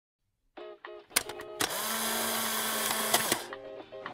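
After a short silence, background music plays, and partway through a small electric motor runs steadily for about two seconds, loud over the music, then stops.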